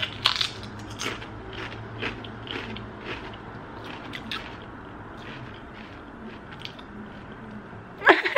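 A person biting into and chewing potato crisps, with an irregular run of dry crunches.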